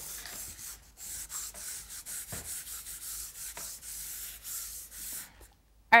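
Soft vine charcoal rubbed on its side across a sheet of drawing paper, a scratchy hiss in quick back-and-forth strokes that stops about five seconds in.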